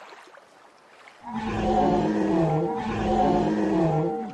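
Animatronic dinosaur's recorded roar, starting about a second in as two long, loud roars in a row with a wavering pitch.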